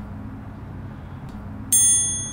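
Bright chime sound effect near the end: several high bell-like tones sound together at once and ring on for under a second. Before it there is only faint low background noise.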